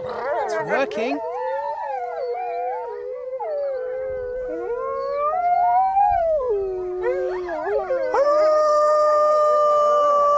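A pack of grey wolves howling in chorus, several howls overlapping and gliding up and down in pitch. Near the end one long howl is held on a steady note, with a man's imitation howl joining in.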